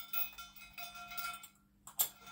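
A dip-belt chain clinking lightly against a metal weight plate as the plate is hooked onto the belt, several small clinks with a brief ring and a sharper click near the end.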